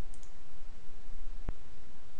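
A single computer mouse click about one and a half seconds in, over a steady background hiss.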